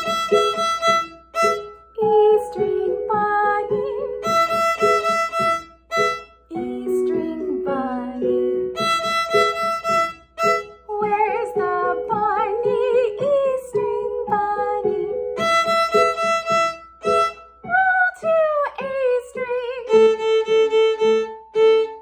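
Violin bowed by hand, playing a simple beginner's tune: runs of short repeated notes alternating with long held notes on the open E string, with some wavering and sliding pitches in between.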